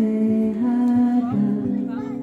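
A woman singing long held notes into a microphone, with acoustic guitar accompaniment, in a live performance.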